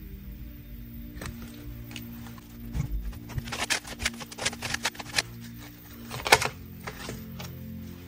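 Soft background music with steady held tones, and over it a quick run of clicks and taps from tarot cards being handled and laid on the table, with one sharper tap near the end.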